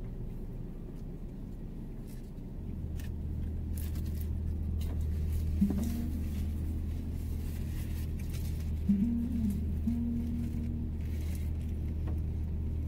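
Steady low drone inside a car cabin, typical of the engine idling, growing louder a few seconds in. A person eating makes a few short closed-mouth 'mm' hums and faint crinkles and clicks.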